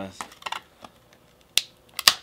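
Sharp metallic clicks of hand tools against skateboard truck hardware as trucks are bolted to a deck: a few light ticks, then two louder clicks near the end.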